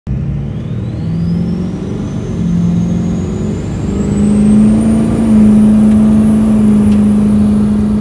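Turbocharged engine revving with a turbo whistle that climbs steadily in pitch over the first five seconds, then holds high and steady. Under it the engine note steps up and settles into a steady high-rpm hum about four seconds in.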